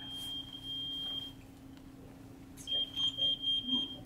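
A high-pitched electronic beep tone: one steady tone lasting about a second and a half, then after a pause the same pitch comes back as a rapid run of pulsing beeps, about four or five a second. A faint steady low hum underneath.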